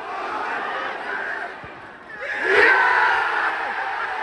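Football crowd in a stadium singing and chanting, dipping briefly about two seconds in and then breaking into a sudden loud surge of shouting that stays up to the end.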